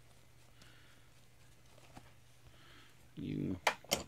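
Faint soft rubbing of a cloth wiping wax off the clear-coated brass housing of a Hunter Original ceiling fan, over a low steady hum. A man's voice starts loudly near the end.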